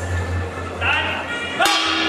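A ring bell struck once near the end, with a sharp clang that rings on: the signal that starts the round. Music with a steady beat plays underneath, and a short shout comes just before.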